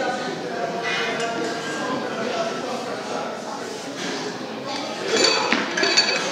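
Plates on a loaded barbell clinking as it is pulled from the floor and caught in a clean, under background voices of onlookers.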